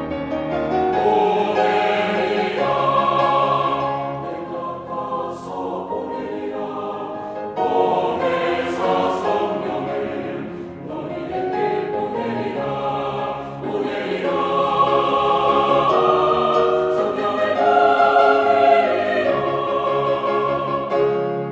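Mixed four-part choir singing a Korean church anthem loudly, with piano accompaniment. The singing comes in phrases with short breaks between them.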